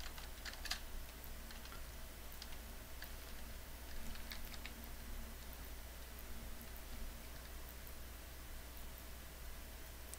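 Faint, scattered clicks of a computer keyboard in use, over a steady low hum.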